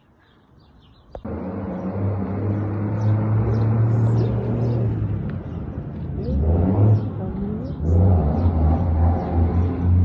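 Chevrolet Silverado pickup's engine starting abruptly with a click about a second in, then running with a loud, deep exhaust rumble that dips and swells a few times.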